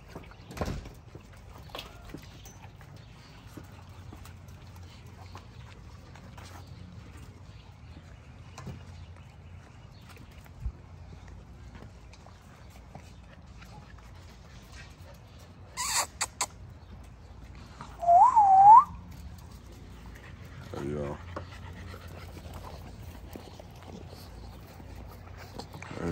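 A person gives a short whistle that rises, dips and rises again about 18 seconds in; it is the loudest sound. A brief clatter of sharp clicks comes about two seconds before it, and a low steady hum runs underneath.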